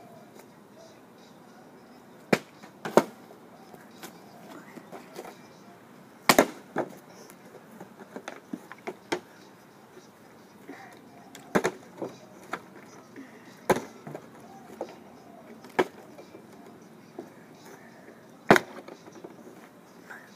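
A partly filled plastic water bottle being flipped and landing on concrete, making about nine sharp knocks a few seconds apart. Some come in quick pairs, a landing and a bounce.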